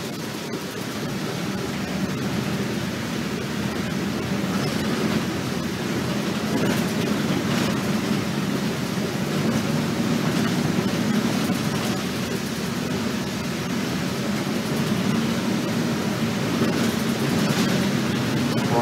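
Cabin noise of an RTS city transit bus under way: a steady low engine drone mixed with road and rattle noise, growing a little louder over the first few seconds.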